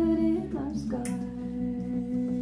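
Female vocalist singing long, wordless held notes in a live band song, the second note lower and held steadily.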